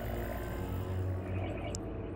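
A steady low hum with faint background music over it.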